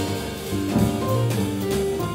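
Jazz piano trio playing live: grand piano, upright bass and drum kit with cymbals.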